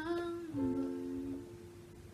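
A young woman humming without words: one held note, then a lower one about half a second in, over a sustained digital keyboard chord that fades away near the end.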